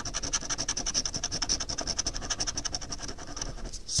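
A coin scratching the coating off a paper scratch-off lottery ticket in rapid, even back-and-forth strokes, about ten a second.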